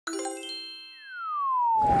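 Cartoon intro sound effects: a bright chime rings out at the very start and fades. About a second in, a single tone slides down in pitch, and a whoosh swells in under it near the end.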